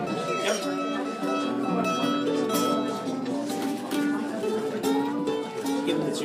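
Banjo being tuned: strings picked one at a time and repeated while their pitch is checked, a note changing every half-second or so.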